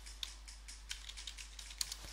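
Computer keyboard being typed on: a quick, uneven run of soft keystrokes.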